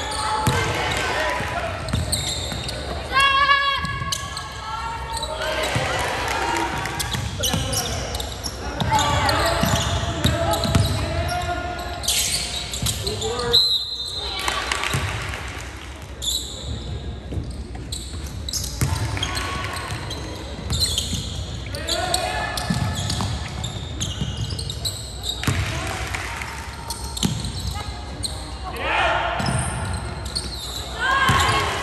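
Live sound of a basketball game in a gym: the ball bouncing, and players and spectators calling out and shouting. A short referee's whistle sounds about halfway through, ahead of a free throw.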